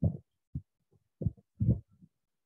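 Four short, low thuds from a ballpoint pen and hand pressing on paper on a desk as lines are drawn.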